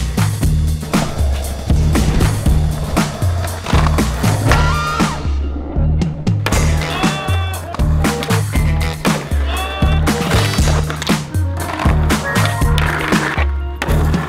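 Skateboard sounds over background music with a repeating bass line: wheels rolling on pavement and sharp clacks of tricks and landings, heard many times.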